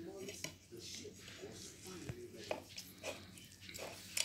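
Faint handling of a thin spring roll pastry sheet being folded over its filling on a plate, with soft rustles and a few light ticks.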